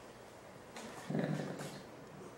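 A man's voice briefly, a short low murmur about a second in, over faint room noise.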